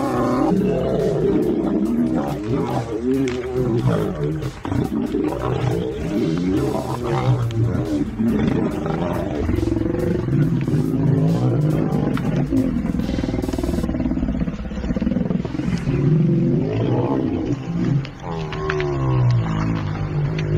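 Two male lions fighting, growling and roaring in loud, overlapping calls with hardly a pause.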